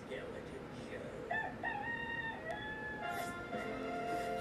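A rooster crow played through a TV speaker, starting about a second in and lasting about a second and a half in a few stepped pitches. Music with held tones starts near the end.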